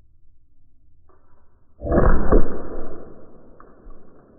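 A Byrna SD projectile hitting the target board, played back slowed down: a sudden deep, drawn-out impact about two seconds in, fading over a second or so.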